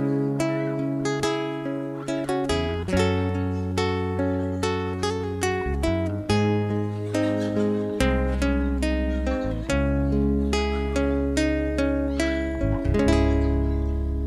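Instrumental intro of a ska-reggae song: acoustic guitar playing a steady run of plucked notes, with bass coming in about three seconds in and a deeper bass about eight seconds in.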